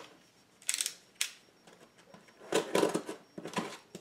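A cardboard shipping box being handled and slid across a table: a short scratchy scrape, a sharp click, then a louder run of scraping and knocking near the end.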